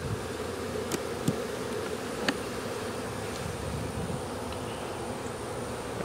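Honey bees buzzing in a steady hum around an opened hive, with a few faint clicks in the first half.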